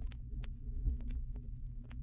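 Vinyl record surface noise from a turntable stylus riding an unrecorded groove: scattered crackles and pops, a few a second, over a low steady hum and rumble, with no music.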